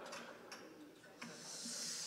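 Faint handling noise from a guitarist shifting his acoustic guitar: a light click, then a soft rustling hiss that builds through the second half.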